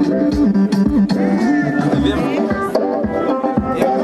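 Music with a steady drum beat and a melody line.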